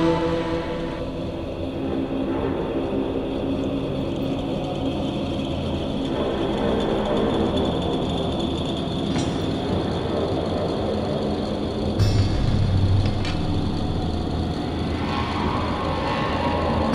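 A dense, rumbling noise passage in a pagan folk metal recording, with little clear melody. A deeper low boom comes in about three quarters of the way through.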